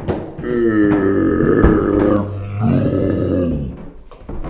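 A man's long, drawn-out groaning cry, then a second shorter one, as a cased iPhone X knocks and clatters down a staircase after being dropped; a few sharp knocks of the phone striking the steps come through the voice.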